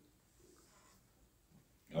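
Near silence: quiet room tone during a pause, with a faint murmur about half a second in and a man's voice starting right at the end.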